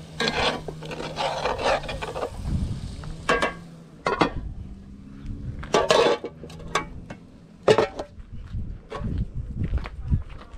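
Aluminium cooking pots being handled: a scraping rustle for the first two seconds, then scattered clanks and knocks as a pot lid and ladle strike the pots.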